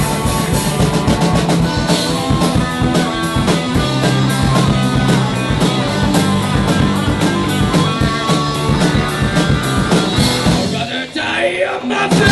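Live rock band playing loud and full: electric guitars, bass guitar and a drum kit driving a steady beat. Near the end the drums and bass drop out for about a second, a short break before the whole band comes back in.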